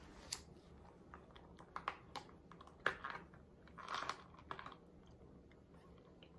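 Faint scattered clicks and taps, with a short breathy rush about four seconds in: a plastic drink cup and straw being handled and sipped from.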